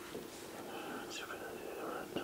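A man whispering faintly into another man's ear, a breathy hush with no voiced words.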